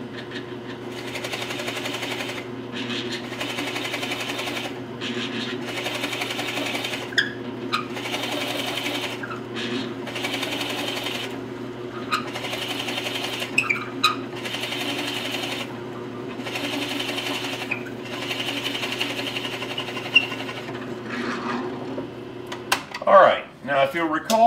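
Drill press motor running steadily while a 1-3/8 inch Forstner bit bores a test hole in plywood, the cutting noise coming and going every second or two as the bit is fed in and backed off. The motor stops near the end.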